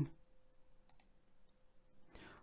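A single faint click about a second in, against quiet room tone with a faint steady hum.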